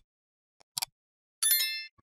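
Short mouse clicks, then a bright bell ding about one and a half seconds in that fades within half a second: the sound effect of a like-and-subscribe button animation, the clicks for liking and subscribing and the notification bell chime.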